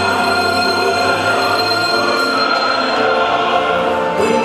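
Handbells ringing in a solo performance: several sustained bell tones overlapping and dying away, played over a recorded accompaniment with choir-like voices.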